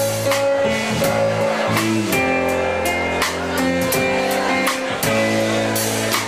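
Live instrumental music: strummed guitar chords over sustained chord tones, with no singing.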